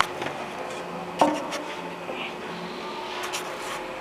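Workshop sounds: a faint steady hum with a sharp knock about a second in and a few lighter clicks.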